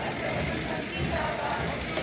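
Street noise from a procession on the march: distant voices under a steady bed of noise, with a thin, high steady whine that stops about a second in.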